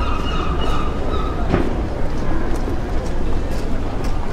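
Town-street background noise: a steady low rumble with faint, indistinct voices of passers-by.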